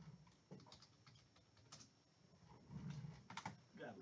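Near silence with faint, scattered clicks and taps: trading cards and a hard plastic card holder being handled and set down on a table.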